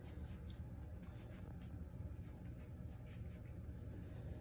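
Faint scratching and rustling with scattered light ticks over a low steady hum: young puppies shuffling and pawing about on fleece bedding and carpet.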